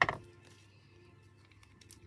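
A single sharp knock on the craft table right at the start, dying away quickly, then quiet handling of paper and ribbon with a few faint clicks near the end.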